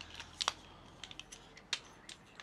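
Sharp clicks and snaps from a small telescoping selfie-stick tripod being unfolded and pulled out by hand: about half a dozen irregular clicks, the loudest about half a second in.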